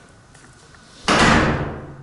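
A door shutting with one sudden bang about a second in, the sound dying away over most of a second in the bare garage.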